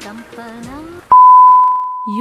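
A song with a sung voice plays for about a second. Then a sudden, loud, steady single-pitch beep from a mobile phone notification cuts in and holds on.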